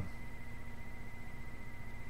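Steady low electrical hum with a thin, steady high-pitched whine above it, fluttering rapidly in level; no speech.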